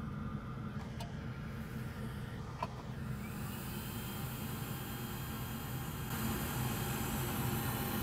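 Steady low hum of running bench equipment, with a hiss that grows about three seconds in and a couple of faint light clicks.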